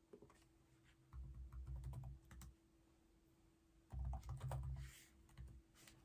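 Faint scattered clicks with two soft, low bumps lasting about a second each, over quiet room tone with a faint steady hum. The clicks are like light tapping on a computer keyboard.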